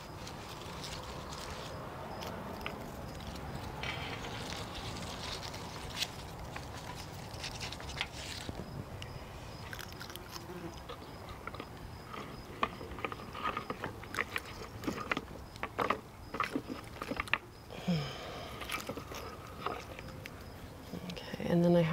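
Cut flower stems and dry echinacea seed heads being handled and sorted: light crackling and rustling that gets busier in the second half, over a steady outdoor background hiss.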